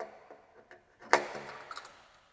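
Sharp clicks of a Cleco temporary fastener being set with cleco pliers into the drilled hole of an aluminium wing strut. A louder click with a short ring comes about a second in.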